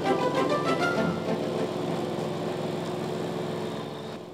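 Background music over the steady running of a ride-on lawn mower's engine.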